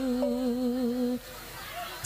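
A woman singing one long held note with a slow, even vibrato, the drawn-out end of a sung line, which stops about a second in.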